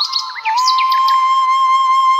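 Background music: a flute melody settling into one long held note, with bird chirps mixed in during the first second.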